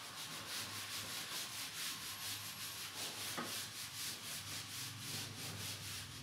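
Whiteboard duster wiping marker off a whiteboard in quick, rhythmic back-and-forth strokes, about five a second, a faint steady scrubbing.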